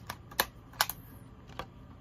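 Plastic disc case being handled, giving four sharp clicks over two seconds, the loudest two about half a second apart.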